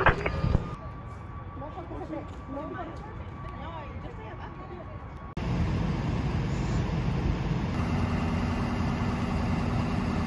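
Faint distant voices at first; then, after an abrupt cut about halfway through, parked fire-rescue vehicles' engines idling with a steady low rumble and hum.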